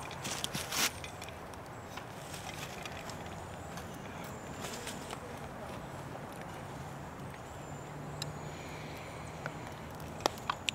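Quiet outdoor background with a steady faint low hum, and a short burst of noise with a few clicks in the first second.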